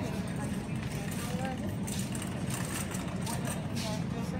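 Wire shopping cart rolling over a supermarket's tiled floor: a steady low rumble from the wheels, with a few light clatters from the basket, and faint voices in the background.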